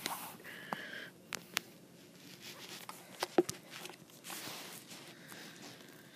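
Plastic container with a red snap-on lid being worked open one-handed: several sharp plastic clicks among rustling and handling noise.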